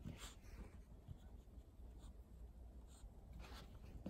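Near silence, with a few faint, short scratchy sounds from an English bulldog nosing and stepping through deep snow.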